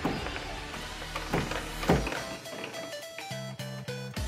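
Electronic sound effects and music from a coin-operated pinball gambling machine: a few quick falling-pitch sweeps in the first two seconds, then a beeping tune of short stepped tones.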